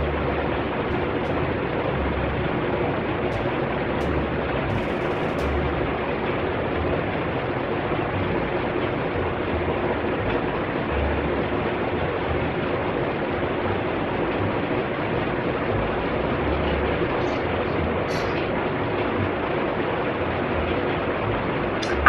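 Electric fan running: a steady, even rushing noise with a faint hum, unchanging throughout.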